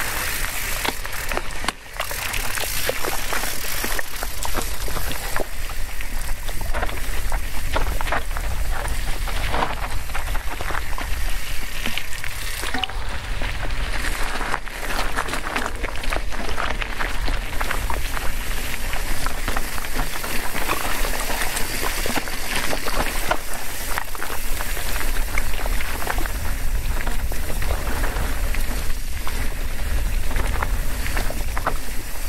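Scott Spark RC 900 WC cross-country mountain bike coasting downhill on a rocky dirt trail: tyres crunching and crackling over loose gravel, with the bike rattling over bumps and a steady low wind rumble on the microphone.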